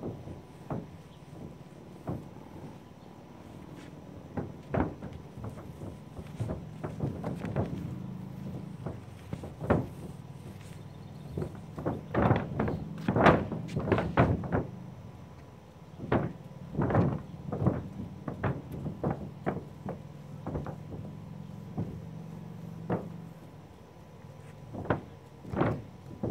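Long-handled paint roller being worked over a coated mobile home roof and loaded in a metal can of Kool Seal roof coating, giving scattered taps and knocks, with a dense cluster of clatter about halfway through as the roller goes into the can. A low steady hum runs underneath most of it.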